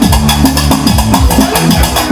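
Live band music with keyboard and a fast, steady percussion beat.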